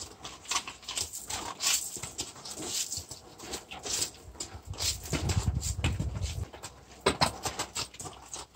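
A mule moving about restlessly on gravel beside a horse trailer: irregular scuffs and knocks from its hooves and the handling of the lead rope, with a low rumble for a second or so past the middle.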